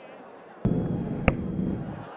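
Stump-microphone sound from a cricket replay: a sudden burst of low field noise about half a second in, with one sharp click in the middle as the ball strikes the batter.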